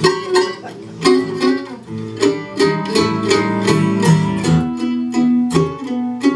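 Acoustic guitar and mandolin playing a blues instrumental break without vocals, with quick picked notes over the guitar's chords.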